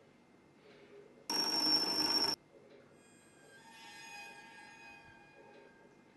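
A sudden, loud electronic ringing burst lasting about a second that cuts off abruptly, followed from about three seconds in by a soft, sustained chord of steady tones that swells and fades.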